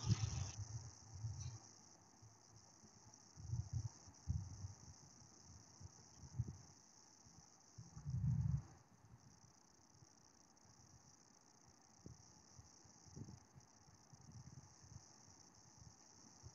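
Faint, steady high-pitched insect chirring, typical of crickets, with a few soft low thumps in the first half.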